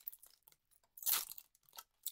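Foil wrapper of a Pokémon trading card booster pack crinkling as it is handled and opened by hand, one short rustle about a second in with a few faint ticks around it.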